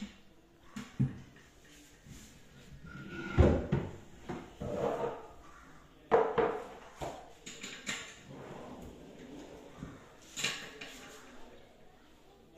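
Knocks, scrapes and clatter of a white laminated board panel and wardrobe drawer parts being handled, with the panel set down on a wooden floor. The loudest thump comes about three and a half seconds in, and another sharp clatter about six seconds in.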